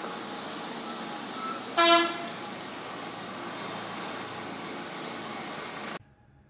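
A single short vehicle horn toot about two seconds in, one steady note, over a constant background of noise.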